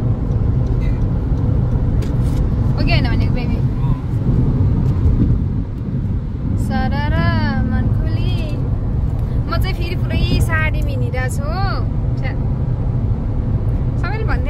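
Steady low road and engine rumble inside the cabin of a Honda car driving at highway speed.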